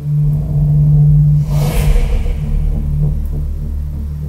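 Movie-trailer soundtrack playing through speakers: a loud, deep rumble with a brief rushing sweep through the highs about one and a half seconds in.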